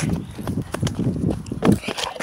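A child's running footsteps thudding over sand and dry grass, several uneven steps a second, heard close with the phone jostling in hand.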